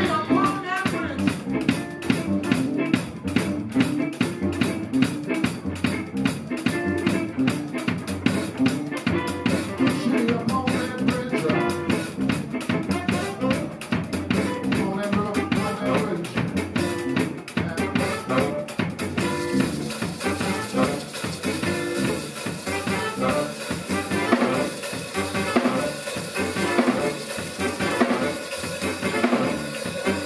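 Live band playing an instrumental passage: a drum kit drives it with rimshots, snare and bass drum, under electric guitar, bass and saxophone. The drum pattern changes about two-thirds of the way through.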